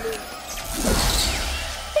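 Cartoon sound effect of a giant flower bursting open: a noisy swell about half a second in, with falling tones and a low rumble beneath, over background music.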